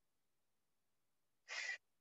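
Near silence, then about one and a half seconds in, a short, sharp breath out lasting about a quarter of a second from a woman working hard at an exercise.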